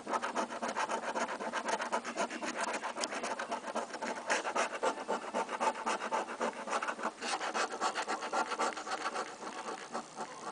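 A coin scraping the coating off a paper scratch-off lottery ticket in rapid, short back-and-forth strokes.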